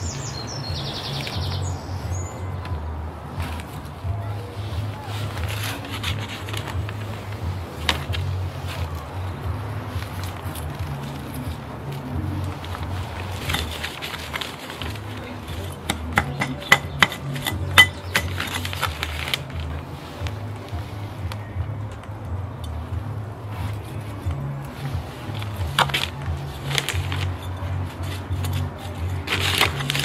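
Background music with a steady low bass line, overlaid by scattered short scrapes and clicks, the loudest clustered around the middle and near the end.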